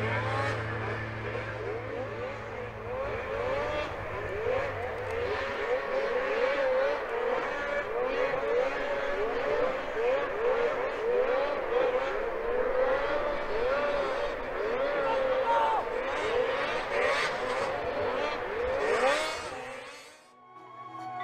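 Several racing two-stroke snowmobile engines revving up and down over and over, their pitch rising and falling as the sleds race around the track. Background music fades out in the first few seconds.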